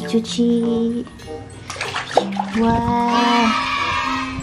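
Water sloshing and splashing in a plastic basin as a hand swirls a toy dinosaur around to wash it, over steady background music.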